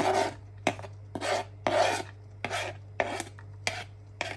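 A knife blade scraping across a plastic cutting board in about seven short, irregular strokes, pushing chopped garlic and ginger off the board. A steady low hum runs underneath.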